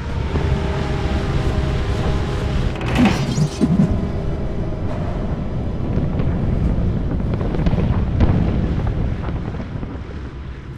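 Steady drone of B-24 Liberator bombers' piston engines, a dense low rumble, with sudden louder swells about three seconds in and again about eight seconds in.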